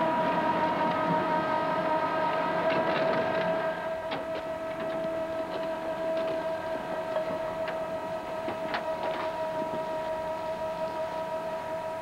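One held two-note chord, steady and unchanging throughout, with scattered faint clicks.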